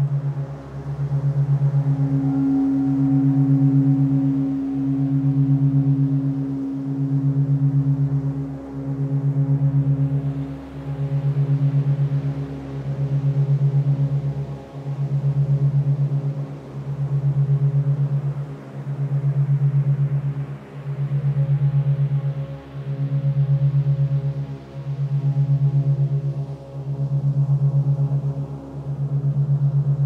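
Ambient meditation drone built on a low tone near 136 Hz, made as 8 Hz monaural beats, that swells and fades about every two seconds over soft sustained higher tones. A brighter, higher tone comes in about two seconds in and fades out by about twelve seconds.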